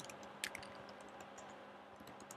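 Faint computer keyboard typing: a scatter of soft key clicks, one more distinct about half a second in.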